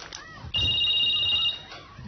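Mobile phone ringing: an electronic ring of two steady high tones, sounding once for about a second starting about half a second in. The phone is left ringing unanswered.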